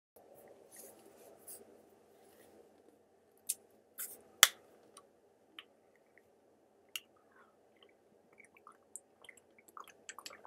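A plastic drink bottle being handled and its cap twisted open: a few sharp plastic clicks and crackles, the loudest about four and a half seconds in, with smaller ticks near the end. A faint steady hum lies underneath.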